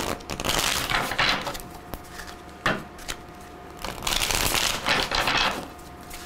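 A deck of tarot cards being shuffled by hand: two stretches of papery card shuffling, a short one near the start and a longer one in the second half, with a sharp tap of the cards in between.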